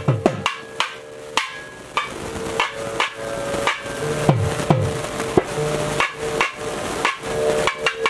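Devotional temple music with a drum struck in an uneven rhythm of sharp strokes, some falling in pitch as they ring. About halfway through, a steady held drone note joins the drum.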